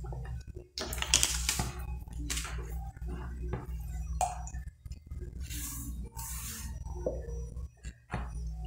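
Scattered light clicks, knocks and clinks of kitchen handling, with a couple of brief rustles, as condensed milk is readied and poured into an aluminium pot on the stove. A low steady hum runs underneath.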